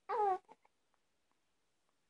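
A young baby gives one short cry that falls in pitch, lasting under half a second at the start. A couple of faint breaths or mouth sounds follow, then it goes quiet.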